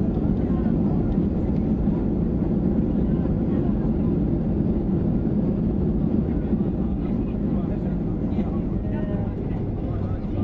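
Cabin noise of a Ryanair Boeing 737 in its landing rollout on the runway: a loud, steady low roar that eases slightly near the end as the plane slows, with faint voices in the cabin.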